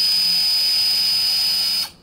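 An 18 V battery-powered automatic tube-fitting tool (American Power Tool Wedge SX1) running its electric motor and gear drive to turn the rotary jaw back to its home position: a loud, steady high whine that cuts off shortly before the end.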